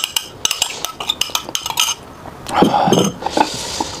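A metal spoon clinking and scraping against a glass bowl as thick garlic sauce is spooned out: a quick run of sharp clinks in the first two seconds, then duller, softer sounds.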